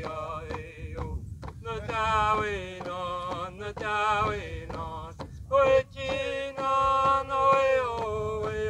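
Men singing a chant together, each beating a round hand drum in a steady beat of about three strokes a second.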